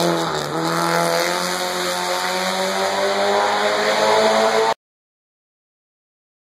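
1977 Honda Civic race car's four-cylinder engine revving hard as it accelerates up the hillclimb course. Its note dips briefly about half a second in, then climbs steadily, and the sound cuts off suddenly near the end.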